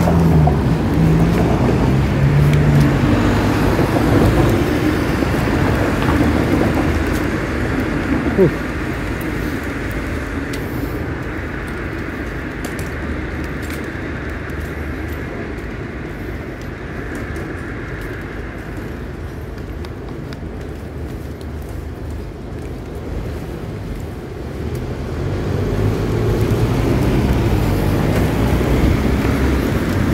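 City street traffic going by: a steady rumble of passing vehicles, louder over the first several seconds, quieter in the middle and building again near the end.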